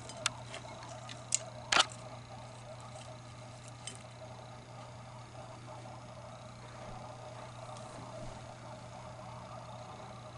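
A few short, sharp clicks in the first four seconds, the loudest a quick double click about two seconds in, over a steady low hum.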